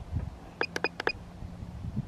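Quadcopter drone electronics beeping: about five short, high-pitched beeps in quick succession about half a second to a second in, over a faint low hum.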